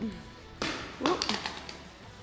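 A short rustling burst about half a second in, then a quick cluster of taps or clicks, over faint background music.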